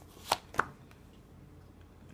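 Two sharp snaps of a deck of tarot cards being shuffled by hand, about a third of a second apart, followed by faint room tone.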